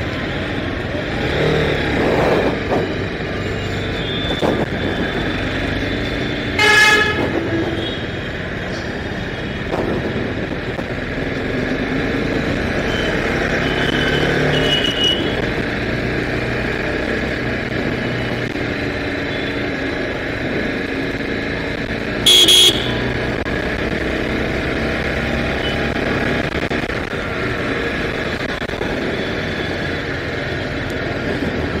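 A TVS Apache RR 310's single-cylinder engine runs steadily under road and wind noise while riding through town traffic. Vehicle horns honk over it: one about seven seconds in, and a sharper, brief blast about twenty-two seconds in.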